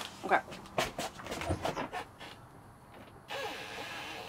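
A few light clicks and knocks of things being handled in a small kitchen, with a spoken 'okay' at the start. About three seconds in, a steady background noise comes in.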